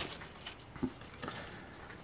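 A few faint clicks and taps as a coin and paper scratch-off tickets are handled, in an otherwise quiet room.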